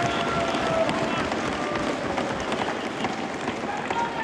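Crowd of assembly members cheering and shouting together: a dense din of many voices with a few long held shouts.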